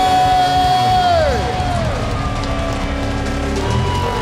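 Live rock band playing loudly, a long held high note sliding down about a second and a half in, with a crowd cheering underneath.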